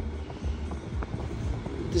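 Aftermarket Android touchscreen car stereo playing FM radio music faintly through the car's speakers, over a steady low rumble.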